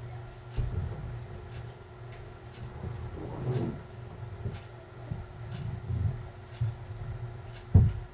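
Handling noise from hand-sewing a nylon spandex lining onto a crochet bra cup: fabric rustling and sewing thread being drawn through, with soft irregular bumps against the table and one sharper knock near the end.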